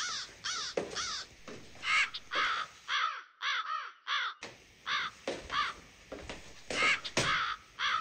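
Crows cawing over and over, about two or three harsh caws a second from several birds, as a spooky night-forest ambience.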